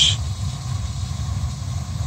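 Gas burner of a steam boiler firing with a steady low rumble. It is running on gas pressure of almost four, which is judged too high.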